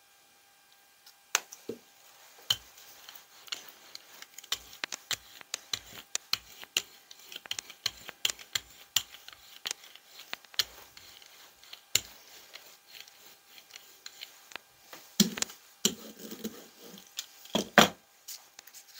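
Brayer rolling paint out over a gel printing plate: a tacky crackle of many irregular clicks, with a couple of louder knocks near the end.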